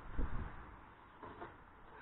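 A few faint knocks and rubs of a plywood mock-up being handled against the steel backhoe arm, bunched in the first half-second, then mostly quiet with one more faint sound about a second in.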